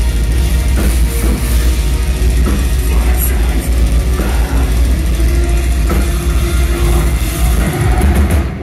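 Metal band playing live at full volume: distorted electric guitars, bass guitar and a pounding drum kit in a dense, continuous wall of sound.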